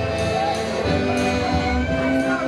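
Ukrainian folk band playing live: a bowed violin melody over accordion, with a drum keeping a steady beat of about one stroke a second.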